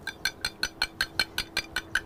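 An egg being beaten with a metal fork on a ceramic plate. The fork clinks against the plate in an even rhythm of about five strokes a second.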